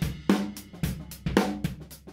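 Drum kit heard through an overhead microphone track: kick and snare hits about every half second under a wash of cymbals and hi-hat.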